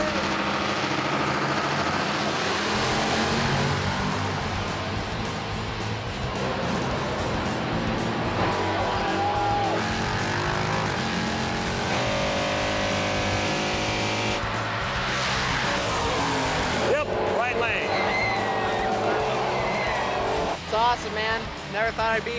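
Two drag-racing cars, a 1970 Chevelle with a 499 cubic inch engine and a 1995 Camaro, running side by side at full throttle down the strip, with a music bed laid over them. Short bursts of voices come in near the end.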